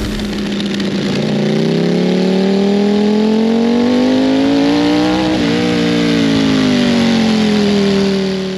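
Ducati Panigale V4 SP2's 1,103 cc Desmosedici Stradale V4 engine, breathing through an Akrapovič exhaust end can, pulling under acceleration with its pitch climbing steadily for a few seconds. After a brief hitch about five seconds in, the pitch slowly falls away as the revs drop.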